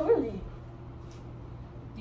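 A short high cry that slides steeply down in pitch right at the start, then a low steady hum.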